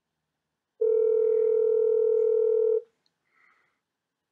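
A single steady electronic tone on a telephone line, starting about a second in and held for about two seconds before cutting off sharply.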